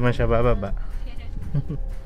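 A man's voice making a quavering, wordless vocal sound, its pitch wobbling rapidly up and down, with a short second burst about a second and a half in, over the steady low rumble of a car's interior.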